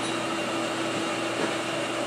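A steady mechanical hum with one low, unchanging tone, like a fan or air-conditioning unit running.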